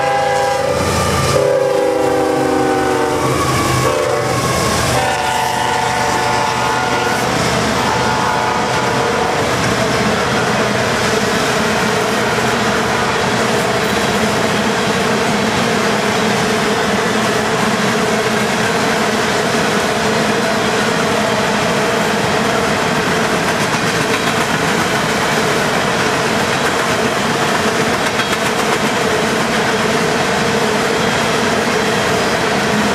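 CSX freight locomotive's air horn blowing as it passes, the chord dropping in pitch between about one and three seconds in and stopping about eight seconds in. Then the steady rumble and wheel clatter of the freight cars rolling by.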